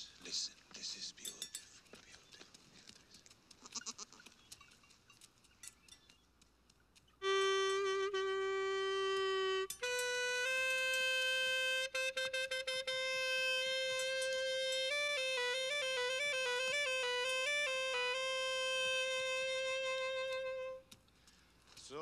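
A clarinet played in long held notes, starting about seven seconds in. A lower note is held for about two seconds, then a higher note is held long with a fast trill in the middle. It stops about a second before the end.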